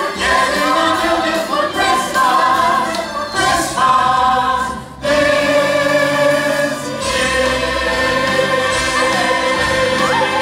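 A stage cast singing in chorus with music, on long held notes; the sound dips briefly just before halfway through, then swells again on a sustained chord.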